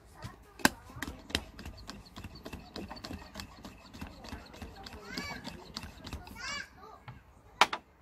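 Clicks and taps of a plastic lid being fitted and pressed down onto a stainless steel tumbler, with a sharp click near the end. A child's voice calls out in the background twice, about five and six and a half seconds in.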